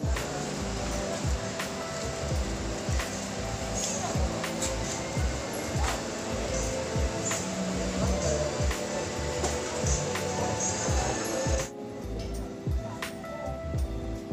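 Background music with a steady beat, its level dropping about twelve seconds in.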